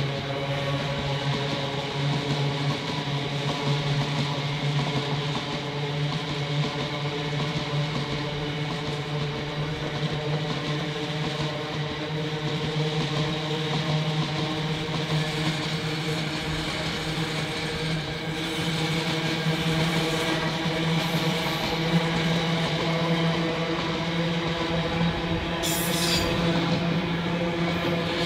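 Container freight train's wagons rolling past at speed: a steady rolling rumble of steel wheels on the rails, carrying a hum of several steady tones, with a sharp knock near the end.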